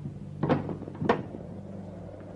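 Two sharp knocks about half a second apart, over a low steady drone.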